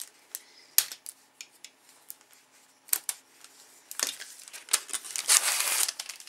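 A paper planner being handled on a table: scattered light clicks and taps, with a rustle of pages about four seconds in and a longer one near the end.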